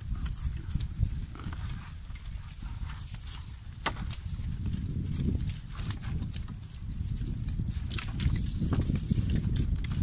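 Lambs crowding and eating at a metal feed trough: scattered clicks, knocks and scuffs of hooves and feed, over a steady low rumble.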